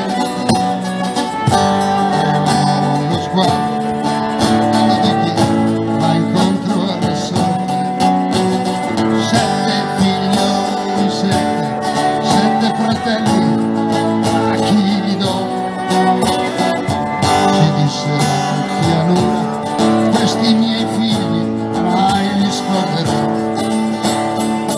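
A live folk band playing an instrumental passage: acoustic guitar strumming with electric guitar, and a violin carrying the melody. It runs steadily throughout.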